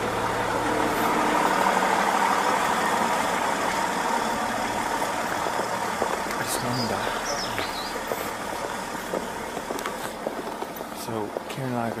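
A car engine idling steadily, with a constant hum that is loudest at first and fades over the second half.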